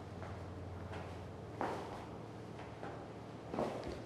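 Soft footfalls of a person doing walking lunges with a sandbag on rubber gym flooring: a few muffled thuds, the clearest about one and a half seconds in and again near the end, over a faint steady hum.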